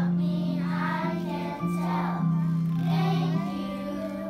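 A group of young schoolchildren singing a song together in unison, over held instrumental notes that change about once a second.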